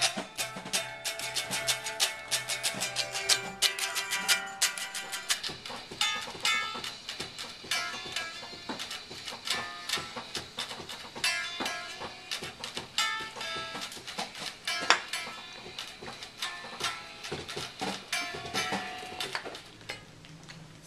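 Guitar picked fast: a dense run of plucked notes and chords with a few short breaks.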